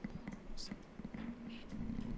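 Faint, indistinct voices whispering and murmuring in a room, with a few small ticks and handling noises.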